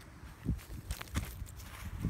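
Soft, irregular footsteps on grass, a few low thuds over a faint rustle.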